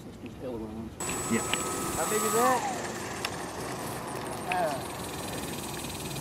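Indistinct talking from people at a flying field, in short snatches. A steady high whine runs briefly and slides down and stops about two and a half seconds in.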